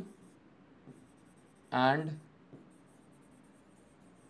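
Pen strokes on an interactive display board: faint, quick scratching and tapping as a word is written out stroke by stroke, with one spoken word partway through.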